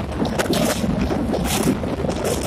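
Passenger train running across a steel truss bridge, heard from an open window: a steady low rumble with wind buffeting the microphone and irregular rushes of air as the truss girders pass close by.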